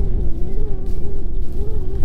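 Wind buffeting the camera's microphone: a loud, uneven low rumble, with a steady, faintly wavering hum running through it.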